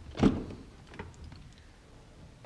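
The front door of a 2013 Chevrolet Silverado 1500 unlatching with a single clunk as its handle is pulled and the door swings open, then a faint click about a second later.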